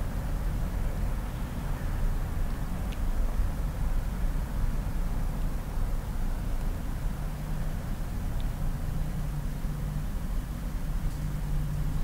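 Steady low background rumble with a faint hum, holding at an even level with no distinct events.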